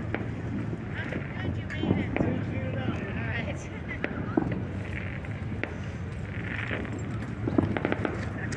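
Voices of people chatting in the background over a steady low rumble, with a few sharp clicks and knocks.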